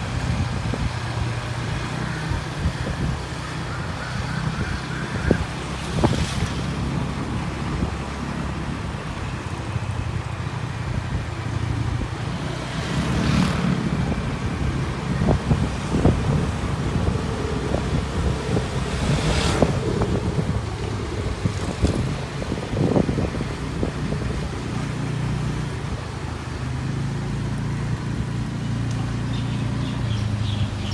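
Small motor scooter engine running steadily under way, with road and wind noise. A few brief louder rushes of noise come through partway.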